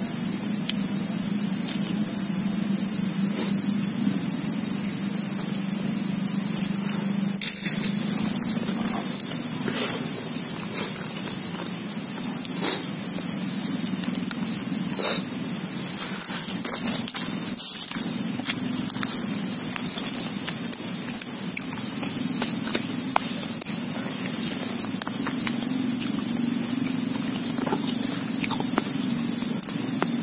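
Steady, shrill chorus of crickets holding two continuous high tones over a low, steady hum, with a few faint clicks scattered through.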